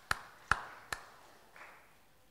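Three sharp hand claps in quick succession, a little under half a second apart, each with a brief echo off the room.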